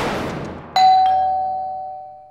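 A swishing whoosh followed, about three-quarters of a second in, by a single bright bell-like chime strike that rings on and slowly fades: a dramatic sound-effect sting at a scene change.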